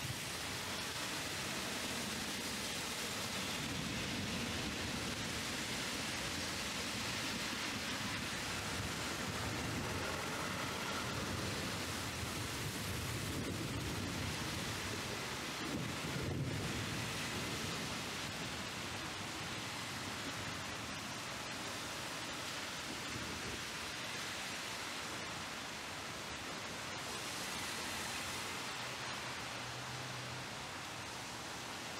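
Heavy downpour: a steady, even hiss of hard rain. About halfway through, a car passes on the wet road, a brief low swell over the rain.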